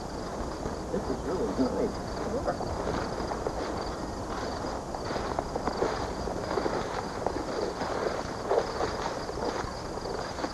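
Outdoor field sound: faint, indistinct voices and people wading through tall weeds, over a steady high chirring like insects.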